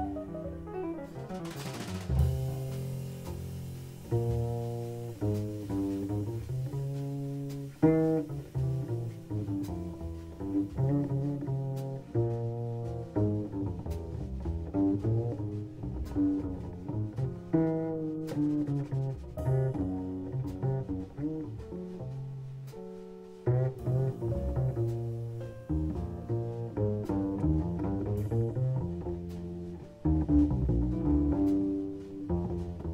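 Upright double bass played pizzicato in jazz: a melodic line of fingered, plucked notes. A descending piano run dies away in the first couple of seconds.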